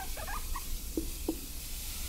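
Dry-erase marker writing on a whiteboard: short squeaks and strokes of the tip against the board, a cluster in the first half-second and two more about a second in.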